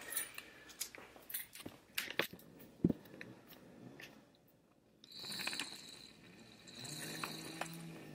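Faint scattered clicks and knocks of a camera being handled and set down, followed near the end by a faint steady hum.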